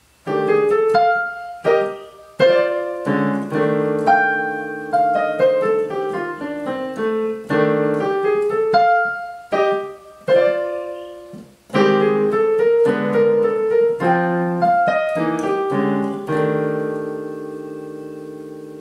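Technics digital piano played with both hands: quick melodic runs over sustained left-hand chords, in phrases with brief breaks about two and eleven and a half seconds in, ending on a held chord that slowly fades.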